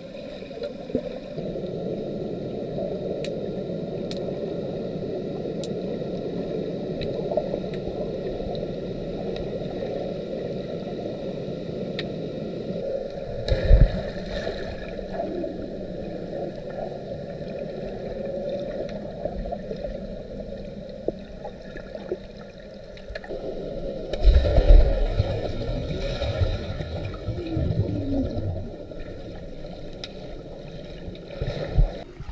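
Pool water heard from underwater through a camera's waterproof housing: a steady muffled rush of moving water. Swimmers plunging in add heavy low surges of splashing and bubbling, a short one about halfway through and a longer one a little later.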